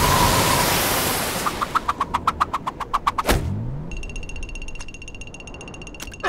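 Whale's blowhole spout rushing loudly and fading over the first second and a half. Then a rapid run of ticks, about eight a second, a sudden thud about three seconds in, and from about four seconds a steady high ringing tone.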